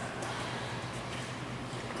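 Quiet indoor room tone: a steady low hum and faint hiss with no distinct events.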